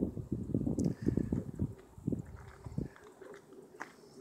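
Footsteps crunching on gravel, dying down about three seconds in.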